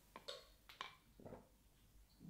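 Near silence, with a few faint short sips through a drinking straw.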